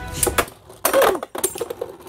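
Spinning Beyblade Burst tops clashing: sharp plastic clicks and clacks, a loud short burst about a second in, then rapid clattering.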